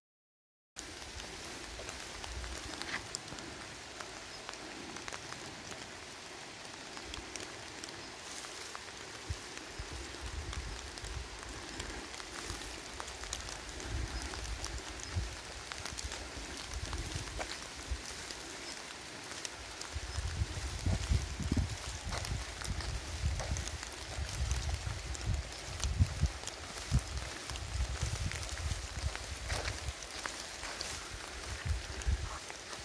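Light rain falling steadily, with scattered individual drops ticking. From about twenty seconds in, low rumbling swells come and go beneath it.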